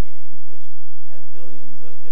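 Only speech: a man talking, giving a presentation.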